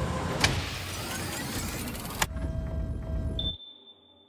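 Sci-fi machinery sound effects: a loud hiss of pressurised gas venting, with a sharp click about half a second in and another a little past two seconds. A low mechanical rumble follows with a thin steady high tone, and both drop away to near silence shortly before the end.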